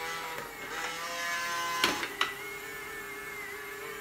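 Small unbranded robot vacuum cleaner running: a steady motor whine made of several held tones. Two sharp clicks about two seconds in.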